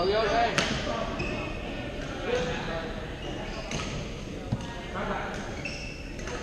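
Badminton being played in a large, echoing sports hall: sharp racket hits on the shuttlecock, the loudest about half a second in and another a little after the middle, over players' chatter from the surrounding courts.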